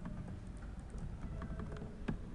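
Light, irregular clicking from a computer's keys and mouse buttons, over a steady low hum.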